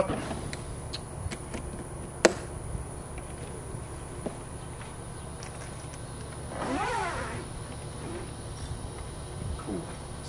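Portable fridge-freezer lid latching shut with one sharp click about two seconds in, over a steady low hum. A few lighter handling ticks follow, and near seven seconds a short pitched sound rises and falls.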